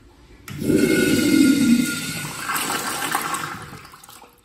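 American Standard wall-hung urinal flushing: a loud rush of water that starts suddenly about half a second in, surges a second time and tapers away near the end.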